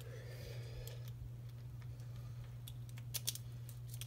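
A key being worked in a challenge lock's cylinder: a faint metallic scrape as it goes in, then a few sharp clicks a little past halfway as it is turned. The key turns a little tight.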